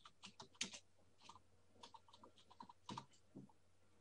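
Faint, irregular keystrokes on a computer keyboard as a file name is typed.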